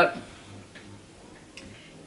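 Quiet room tone with a faint low hum and two faint clicks, one a little under a second in and one near the end.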